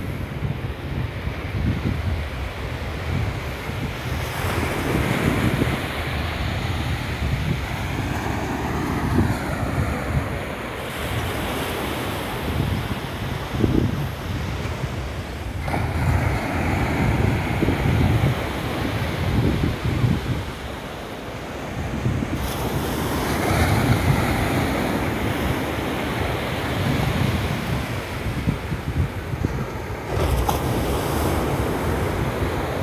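Small waves washing up onto a sandy beach, their hiss swelling and fading every several seconds, with wind buffeting the microphone in gusts.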